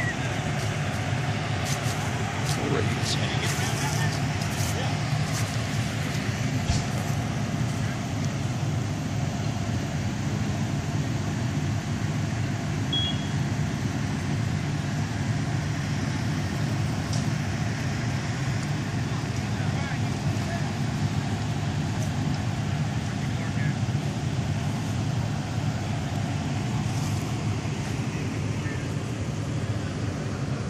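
Steady low running of parked fire trucks' engines, with indistinct voices in the background.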